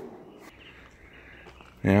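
Faint, steady outdoor background noise with no distinct event, then a man starts speaking near the end.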